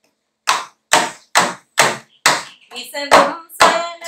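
Hand drum with a hide head, a frame drum, struck by hand in a steady beat of a little over two strokes a second, starting about half a second in.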